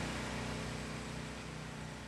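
Small boat's outboard motor idling steadily, a low even hum under background hiss, easing slightly in level.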